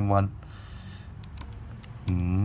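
A few faint key clicks from a Casio fx-50FH Plus scientific calculator as numbers are keyed in. A short voiced sound comes right at the start.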